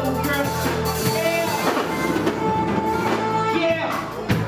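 Live band playing an instrumental groove: drum kit and guitar over a steady bass line, with long held melody notes on top.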